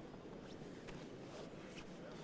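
Faint arena background noise with a few soft, short knocks from the fighters grappling on the canvas.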